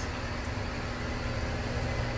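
Steady running noise of a greenhouse evaporative cooling system: an exhaust fan running with a low hum, with water trickling down the soaked cellulose cooling pad into its trough.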